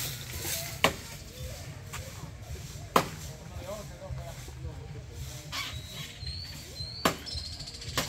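Three sharp knocks, a second, three seconds and seven seconds in, over a low steady rumble, with faint far-off voices in between.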